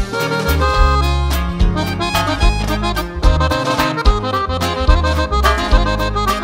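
Norteño music in an instrumental stretch without vocals: an accordion plays the melody over a walking bass line and a steady drum beat.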